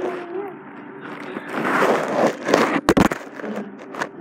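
A phone dangling on a charger cord rubbing and scraping against the wall as it swings, then knocking sharply against it a couple of times about three seconds in. A child's voice is heard briefly at the start.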